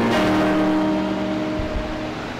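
Church organ sounding a final held chord, several steady notes sustained after a run of moving notes and released near the end: the close of a piece of service music.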